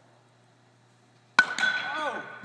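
A bat hitting a ball about a second and a half in: one sharp crack, a smaller knock right after, and a ringing tone that lingers.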